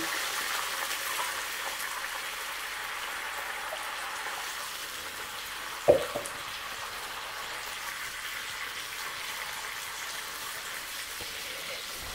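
Liquid broth poured in one go onto hot rendered bacon fat and browned onions in a frying pan, then sizzling steadily. The sizzle is a little louder in the first couple of seconds. There is a single knock about six seconds in.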